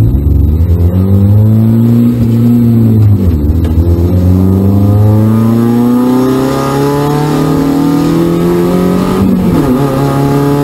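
Spec Miata's four-cylinder engine accelerating through the gears, heard from inside the cockpit: the revs climb, drop at an upshift about three seconds in, climb steadily again, and drop at another upshift near the end.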